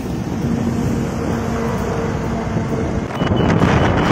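Wind rushing over the microphone of a phone filming from a moving motorbike, over steady engine and road rumble. The wind noise swells louder about three seconds in.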